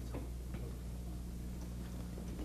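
Steady low electrical hum with a few faint ticks, the background noise of an old archival broadcast tape between stretches of narration.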